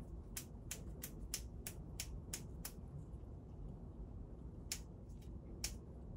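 Light, sharp taps on a plastic vaccine syringe as the dose is drawn up: a quick run of about eight, roughly three a second, then two more near the end, over a low steady room hum.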